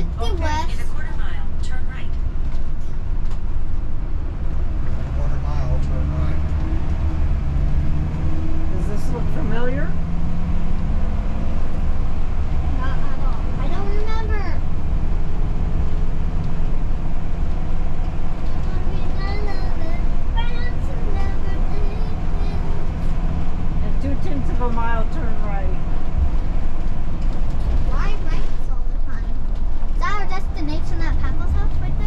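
Motorhome engine and road noise heard inside the cab while driving: a steady low drone. The engine note rises for a few seconds early on, then holds steady.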